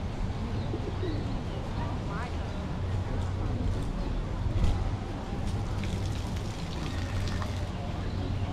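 Doves and pigeons cooing and calling among people's voices, over a steady low outdoor hum.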